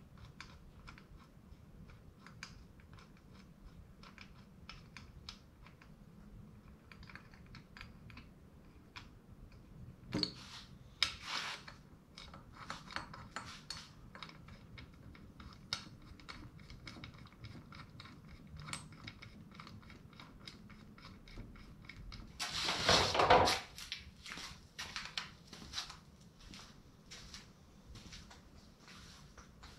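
Small metal clicks and clinks of engine parts being handled as the cylinder head of a Predator 212 Hemi engine is fitted to the block and its head bolts are set in place. There is a louder run of clicks about ten seconds in and a louder clatter lasting about a second near the end.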